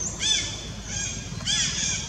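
Baby monkey giving three short, high-pitched squealing calls, each rising and then falling in pitch.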